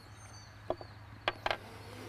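Quiet outdoor background with a steady low hum and a few faint bird chirps, broken by three or four light clicks around the middle.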